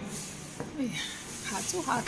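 A person's voice: short vocal sounds with sliding pitch, too unclear for words, after a brief hiss at the very start.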